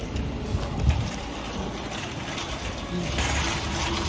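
Outdoor parking-lot noise: a steady low rumble of wind on the phone's microphone and traffic, with a short knock about a second in as the phone is handled.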